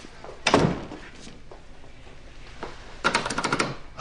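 A heavy thud about half a second in. Near the end comes a quick rattling run of sharp clicks, about ten in under a second.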